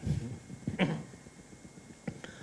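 Two short, soft vocal sounds from a man, the second a little under a second in, quieter than the talk around them.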